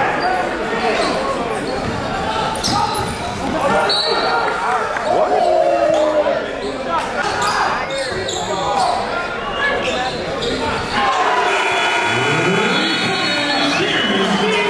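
Basketball being dribbled on a hardwood gym floor during live play, with crowd and player voices echoing around a large gymnasium.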